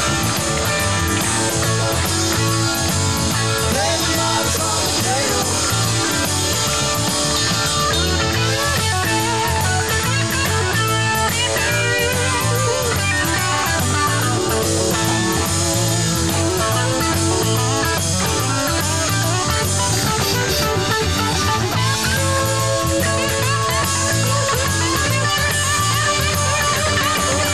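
Live rock band playing: an electric guitar solo with bending notes over bass and a drum kit keeping a steady beat.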